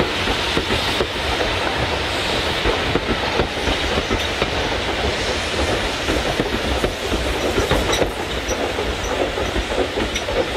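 Steam-hauled passenger coaches rolling past, their wheels clattering over rail joints in a steady rumble with clicks.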